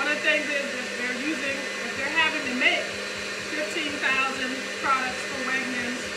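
A woman talking over a steady electric motor hum.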